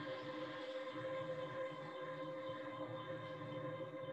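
A steady drone of several held tones from the soundtrack of a TV episode being played.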